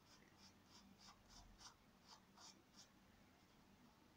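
Faint, quick strokes of a white pastel stick scratching across paper, about three strokes a second, stopping about three seconds in.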